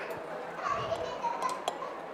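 Background chatter of voices, including children's voices, with a couple of light clicks about one and a half seconds in.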